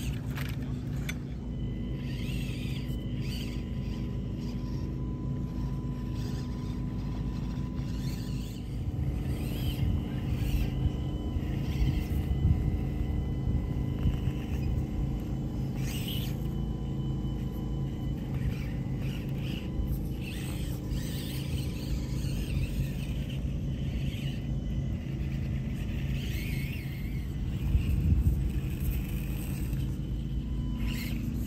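RC crawler's electric motor and geared drivetrain running with a steady low hum as the truck crawls over dirt mounds. It gets louder for a few seconds about a third of the way in and again near the end.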